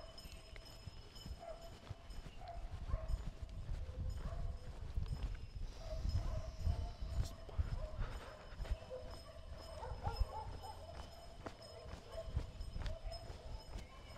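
Footsteps of a person walking on a paved lane, with scattered faint knocks, and an uneven low rumble on the microphone.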